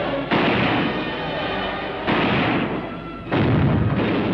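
Battle sound effects of cannon fire on a film soundtrack: three sudden blasts, the first about a third of a second in, then one about two seconds in and one near the end, each dying away over about a second.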